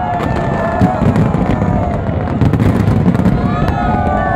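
Fireworks display: aerial shells bursting, with many sharp bangs and crackles following closely one after another.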